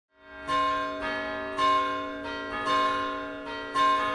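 Church bells pealing: a new bell struck about twice a second at changing pitches, each one ringing on under the next. The sound fades in at the start.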